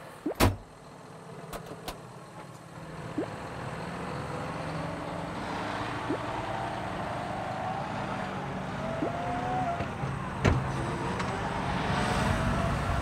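A John Deere tractor's diesel engine running and building up as the tractor pulls away with a mounted maize planter; a sharp clunk about half a second in and a knock near the end.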